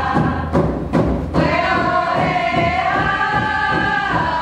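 A group of women singing together to a steady hand-drum beat, with a brief break about a second in before a long held note.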